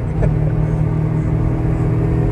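Honda Civic SiR's B16A engine running at highway speed, heard from inside the cabin with road noise. It is a steady drone that holds one pitch.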